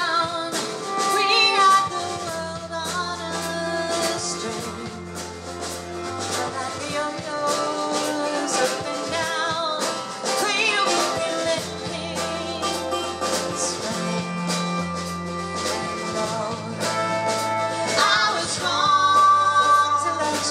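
Live folk-rock band playing a song: a woman sings lead over strummed ukulele and acoustic guitar, electric bass and a steady drum beat.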